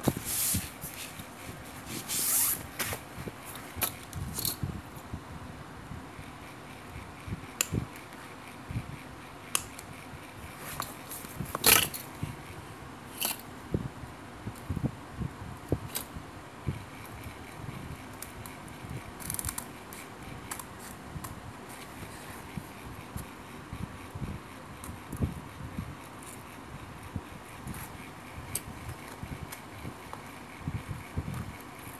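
Scissors snipping now and then at a fabric bag lining and its threads, amid scattered clicks, scrapes and rustles of hands handling a crocheted bag. The sharpest click comes about twelve seconds in.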